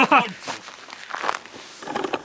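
Footsteps of boots fitted with chain-and-spike ice cleats on frozen, gravelly ground: a few separate steps.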